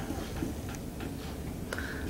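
Quiet room tone: a low steady hum with a few faint ticks.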